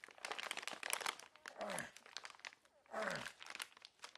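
Crinkling and tearing of a paper-like licorice bag being worked open one-handed, a dense run of sharp crackles; the bag is well sealed and resists. Twice, around the middle and about three seconds in, a short vocal sound falls in pitch.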